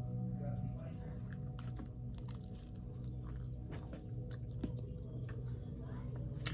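A person biting into and chewing a sausage and egg biscuit sandwich close to the microphone, with many small wet mouth clicks, over a steady low hum.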